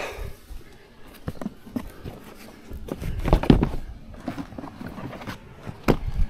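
Handling noise as a rider climbs off an ATV over its rear rack: rustling of clothing and gear, light knocks and shuffling steps, then one sharp click near the end.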